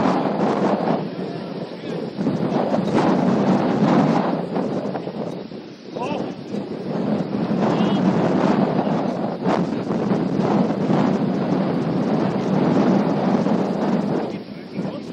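Wind buffeting the microphone in gusts that rise and fall, dropping away briefly about six seconds in, with indistinct voices under it.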